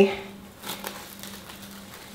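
Plastic wrap crinkling faintly as hands press pie dough down into the dish through it, with a couple of brief rustles a little under a second in.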